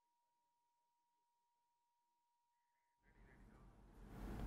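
Near silence with a faint, steady pure tone held at one pitch. About three seconds in, a louder noisy sound with no clear pitch comes in and grows.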